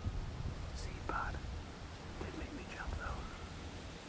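Hushed human whispering over a steady low rumble on the microphone.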